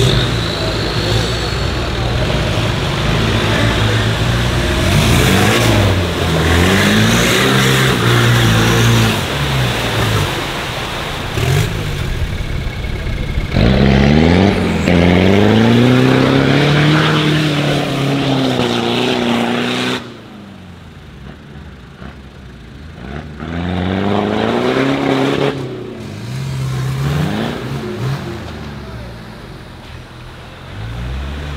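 Off-road 4x4 engines revving hard, their pitch climbing and falling again and again as the trucks are driven through mud and dirt with the wheels spinning. The sound changes abruptly twice, about 13 and 20 seconds in, and is quieter after the second change.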